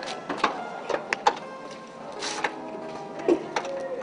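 Background music with a steady melody, over a series of sharp clicks and knocks as a car's driver door is unlocked and opened, with a short rustling burst a little after two seconds in.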